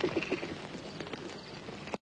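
Irregular clattering knocks of footsteps on hard ground from a crowd moving about, fading and then cutting off suddenly.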